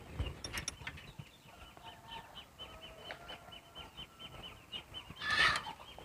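Faint outdoor bird calls: a run of short, high chirps repeating several times a second, with a louder squawk about five seconds in.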